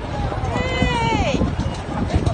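A person's single drawn-out shout about half a second in, lasting about a second, its pitch rising and then falling, over a steady low rumble of street and handling noise.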